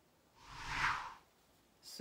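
A single whoosh transition sound effect that swells and fades within about a second.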